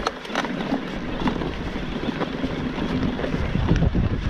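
Mountain bike ridden over a rocky dirt trail: tyres crunching and the bike rattling, with several sharp knocks as it hits stones, and wind buffeting the microphone.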